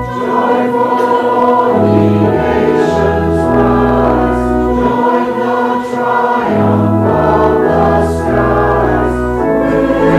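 A congregation singing a hymn with organ accompaniment. Held bass notes change about once a second under the voices.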